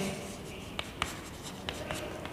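Chalk writing on a blackboard: light scraping with a few sharp taps as the chalk strikes the board while a word is written.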